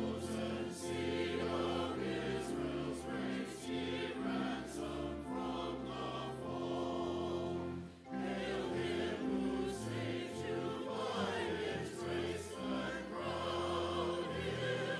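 Church choir singing with organ accompaniment, sustained chords throughout, with a brief pause between phrases about eight seconds in.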